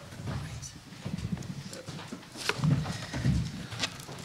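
Bumps and knocks on the table microphones as people shift papers and chairs at a panel table, with a couple of sharp clicks, one about two and a half seconds in and one near the end, over muffled talk.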